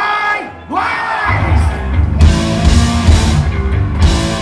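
A hardcore punk band playing live. A shouted vocal line through the PA comes first, then about a second in the distorted guitars, bass and drums come in, with cymbals filling out the full band about two seconds in.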